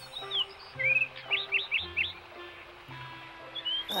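Bird chirps over soft background music: a few short chirps, with a quick run of four about a second and a half in.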